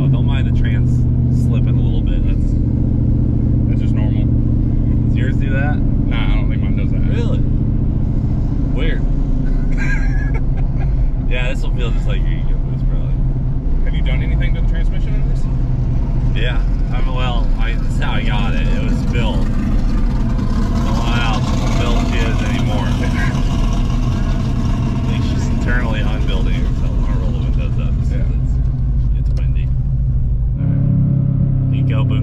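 Whipple-supercharged Coyote V8 of a Ford F-150 running steadily as the truck drives, heard from inside the cab, with short bits of voice and laughter over it.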